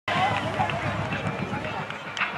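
Voices on and around a football field with no clear words: several people talking and calling out at once as the offense sets at the line of scrimmage.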